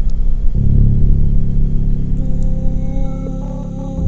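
Ambient drone music: layered sustained low tones that shift to a new chord about half a second in, with thin, steady higher tones joining around the middle.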